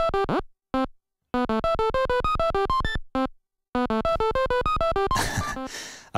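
The 8-bit granular synth of a DIY Groovesizer step sequencer plays a looping 16-step pattern of short, quick notes at about eight a second, jumping between pitches. The notes were entered at random, and the result is a very ugly little pattern. Each run is broken by a short silence with a single note in it, and the loop repeats about every two and a half seconds.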